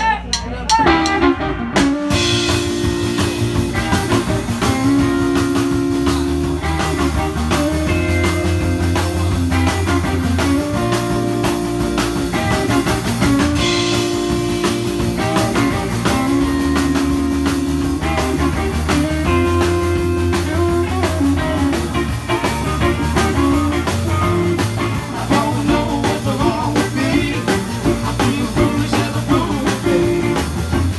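Live electric blues band playing: electric guitars over a bass guitar and a drum kit. After a few drum strokes at the start, the full band comes in about two seconds in.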